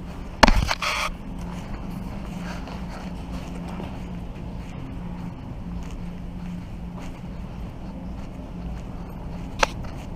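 Wheels rolling over a hard, smooth store floor with a steady low rumble. There is a loud clattering knock about half a second in and a single sharp click near the end.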